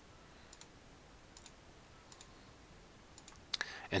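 A few faint, scattered computer mouse clicks over low room hiss, with a sharper click near the end.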